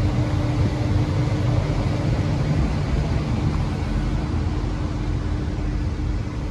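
Steady hum and hiss of a large showroom hall's air handling, with a faint steady tone held underneath.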